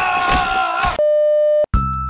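A loud rushing noise with a man shouting over it, then a steady electronic beep tone held for about half a second that cuts off sharply. Music with a beat starts just after, near the end.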